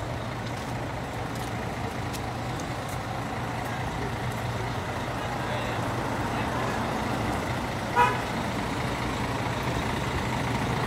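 Street traffic noise with a steady low engine hum from stopped buses, and a single short vehicle horn toot about eight seconds in.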